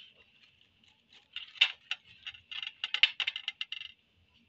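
Plastic bag crinkling as it is handled: a quick, irregular run of light crisp crackles starting about a second in and stopping just before the end.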